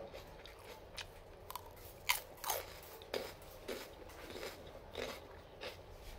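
Close-up crunching and chewing of raw bitter melon, a run of crisp crunches with the loudest pair a little after two seconds in.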